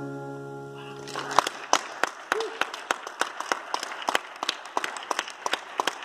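The last acoustic guitar chord rings out and fades, then an audience starts clapping about a second in, scattered and uneven claps.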